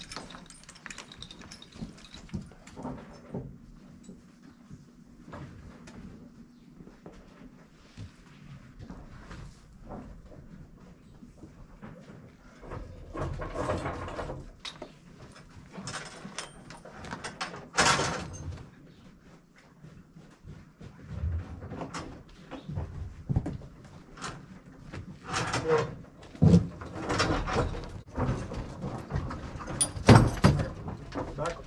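Harnessed draft horses moving about in a barn: scattered knocks, scuffs and rustles, with one sharp knock about halfway through and a run of louder knocks near the end.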